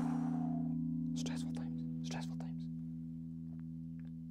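A chord on an electric guitar rings out through the amp and slowly dies away, left to sustain untouched. Short breathy, hissy sounds come over it about a second in and again about two seconds in.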